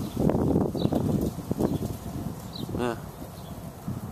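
Rustling and knocking of a handheld camera on the move outdoors, loudest in the first second and a half, with a few faint, short bird chirps in the background.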